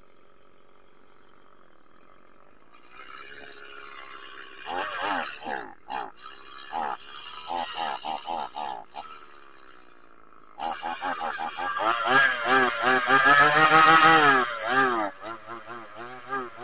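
Two-stroke chainsaw idling, then revved in short bursts, then held at full throttle for about five seconds near the end as it cuts into a tree trunk, its pitch wavering as the load changes.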